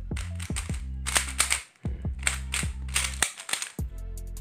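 Stickerless MoYu Meilong 3×3 speedcube turned quickly by hand: a rapid run of sharp plastic clicks as the layers snap round. Background music with steady low notes plays underneath.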